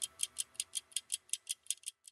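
Ticking-clock sound effect of a show's closing sting: sharp, quick ticks, about five or six a second, over a faint sustained music bed, fading out near the end.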